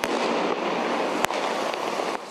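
A single sharp bang, like a small explosive or firecracker going off, about a second in, over a steady rushing street noise that starts suddenly.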